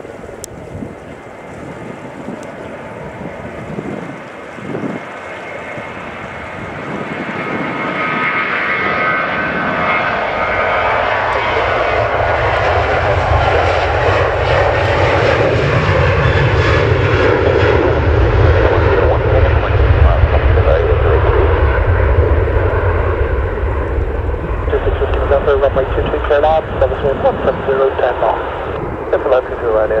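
Jet engines of a Ryanair Boeing 737-800 at takeoff power, the noise building steadily as the airliner accelerates down the runway, with a deep rumble coming in a little over a third of the way through. It is loudest about two-thirds of the way in as the jet passes, then eases off as it climbs away.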